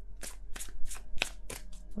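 Tarot cards being shuffled by hand: a quick run of short, dry card slaps, about five a second.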